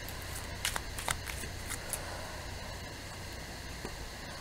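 A deck of cards being handled and one card drawn out: several light, sharp clicks and flicks in the first half, then quieter handling, over a steady low hum.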